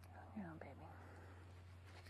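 A brief soft whispered voice about half a second in, over a steady low hum and otherwise near silence.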